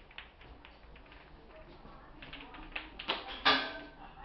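Light scattered taps and clicks on a tiled floor from a toddler moving about with a small toy, then a short, loud, high-pitched vocal sound from the child about three and a half seconds in.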